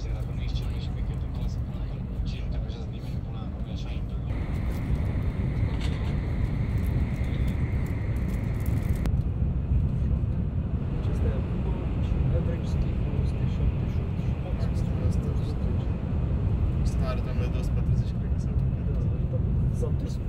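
Steady low rumble and hiss inside the passenger cabin of a Shinkansen bullet train running at about 240 km/h.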